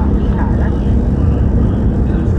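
Steady low rumble of road and engine noise heard from inside a moving car.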